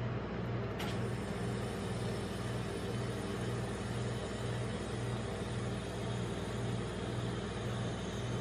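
Steady low hum of the refrigeration compressor that chills an ice-cream-roll cold plate, with a slow, regular throb in its low tone.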